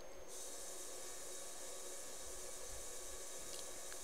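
Low, steady hiss of background noise with a few faint steady tones, in a pause between speech.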